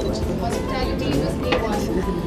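A woman speaking into a handheld microphone over a noisy hall, with several short sharp clicks scattered through it.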